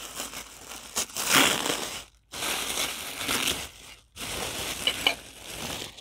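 Tissue paper crinkling and rustling as it is unwrapped from a gift tumbler, in three stretches with brief pauses about two and four seconds in.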